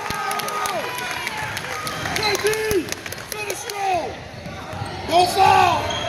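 Basketball sneakers squeaking on a hardwood gym floor during play: a series of short squeaks that grow louder and more frequent toward the end, over background voices in the gym.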